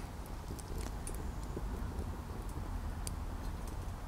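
Wood fire burning in a Solo Stove Lite and a Lixada tower stove, with a few faint, scattered crackles over a low wind rumble on the microphone.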